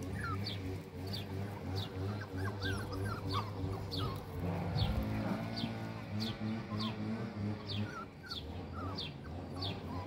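A bird repeats a short, high, downward-sliding chirp about twice a second, with a few other twittering calls, over a low steady hum.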